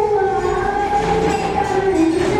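Group of children singing together in unison, holding long drawn-out notes, with the note changing near the end.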